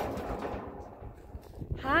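Low, scattered thumps and shuffling of feet on the floor of a livestock trailer, after a short rustle fading at the start. A woman's voice says "Hi" near the end.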